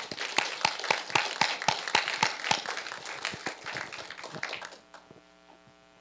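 Audience applauding, the clapping thinning out and dying away about five seconds in.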